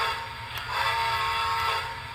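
American Flyer FlyerChief Polar Express Berkshire 1225 S-gauge locomotive's onboard sound system playing its steam whistle, sounded from the remote. It gives a steady whistle of several notes at once: one blast cuts off just as the clip begins, and a second starts under a second in and stops near the end.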